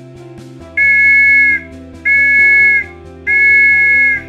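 Scout whistle blown in three long blasts, each a steady two-note tone, starting about three-quarters of a second in: the scout signal for dismiss, hide, spread out and sit.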